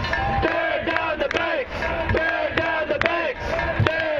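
A crowd of protesters chanting and shouting in unison, many voices rising and falling together in short repeated phrases.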